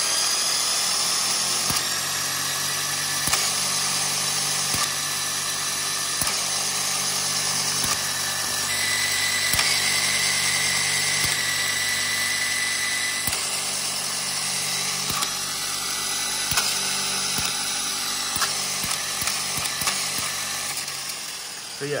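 VEX robot flywheel driven by two electric motors, its whine rising in pitch in the first second as it comes up to speed, then running steadily with gear noise and occasional clicks. A higher, steady whine joins in for a few seconds near the middle.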